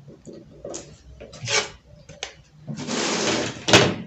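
Brown pattern paper being handled: a few short scratches of a pen on the paper, then nearly a second of paper sliding and rustling, ending in a sharp knock.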